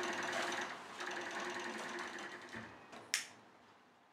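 A steady mechanical whirring hum that fades out, with one sharp click about three seconds in.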